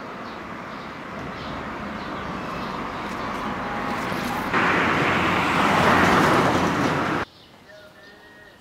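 Road noise building over the first few seconds, then a pickup truck driving past close by, loud tyre and engine noise that cuts off suddenly near the end.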